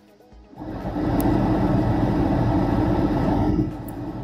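A motor vehicle rumbling close by. It starts about half a second in, holds steady for about three seconds and eases off near the end.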